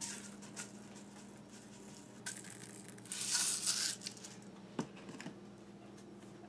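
Sprinkles shaken from a plastic shaker container into cake batter: a brief rattle, then a louder rattling pour of about a second, followed by a couple of light knocks of the container on the counter.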